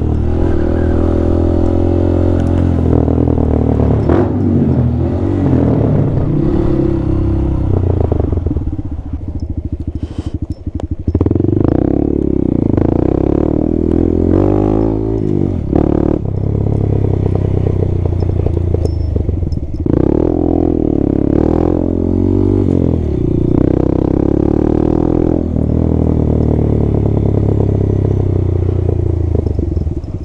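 Honda Grom (MSX125) 125 cc single-cylinder four-stroke engine pulling the bike along a dirt lane, its revs rising and falling with the throttle. The revs drop off briefly about nine to eleven seconds in, and a few short knocks and clatters come from the bike running over the rough track.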